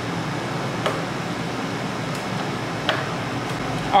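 Steady background hum with two light clicks, about one and three seconds in, as a plastic tail light housing is handled and pushed into a motorcycle's tail section.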